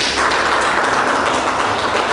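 A room of people applauding: steady clapping from many hands.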